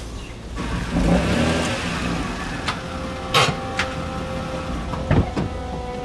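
A car pulling up and stopping, then sharp clicks and knocks from its door opening.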